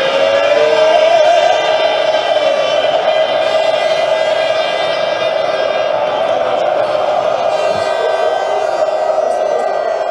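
Large crowd of football supporters chanting together in one long, loud, sustained chant.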